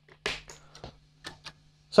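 A few faint, sharp clicks about a third of a second apart in the first second and a half, over a low steady hum from the switched-on guitar amplifier.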